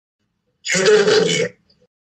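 A man's short, throaty vocal noise, under a second long, starting about two-thirds of a second in.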